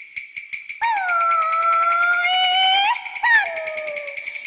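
A child singing Cantonese opera: one long held high note that rises at its end, then a short falling phrase, over quick, steady percussion ticks.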